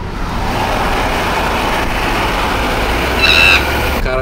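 Steady road and wind noise of traffic, heard from inside a moving car, with a low engine hum under it. About three seconds in, a brief high pitched tone cuts through.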